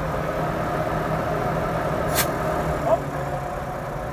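LiAZ-677 bus's V8 petrol engine idling while its air compressor charges the air tanks to about 8 atm. About halfway through, the KAMAZ air pressure cut-off valve trips with a short sharp puff of air, and the running sound then drops slightly as the compressor unloads and vents to the atmosphere instead of the tanks.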